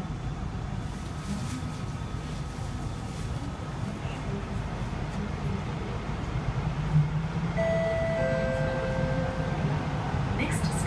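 Kawasaki & CSR Sifang C151A metro train running steadily, a low rumble heard from inside the car, with a short knock about seven seconds in. Near the end a two-note falling chime sounds, the second note joining the first about half a second later and both held.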